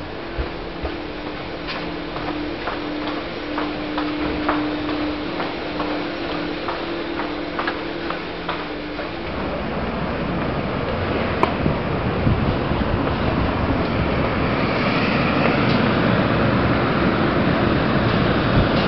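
Footsteps on a hard floor, about two a second, over a steady hum. About nine seconds in, the hum stops and a louder steady rushing noise takes over, growing toward the end.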